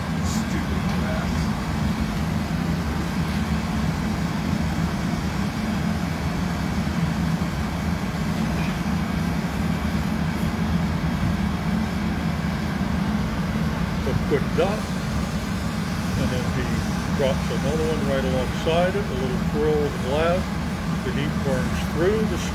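Steady low roar of a glassblowing studio's gas burners, with a hand torch in use on the hot glass. Faint voices come in over it in the second half.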